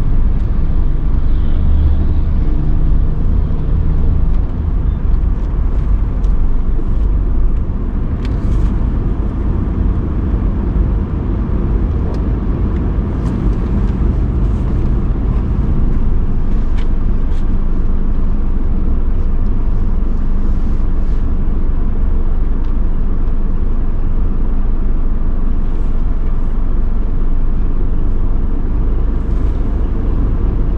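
Low rumble of a car's engine and road noise heard from inside the cabin. It drops slightly about ten seconds in as the car comes to a stop, then settles into a steady idle hum while it waits at a red light.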